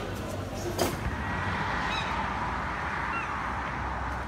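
Gulls giving a few short calls over a steady hum of urban background noise, after a sharp knock about a second in.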